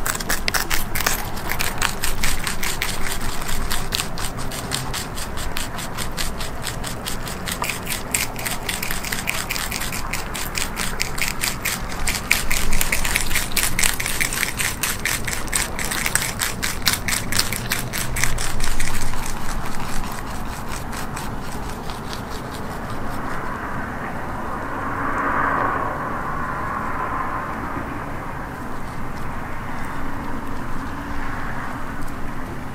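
Eastern cottontail rabbits crunching crisp kale stems, a fast run of sharp crunches several times a second. About 20 s in the crunching fades into a duller, more muffled sound.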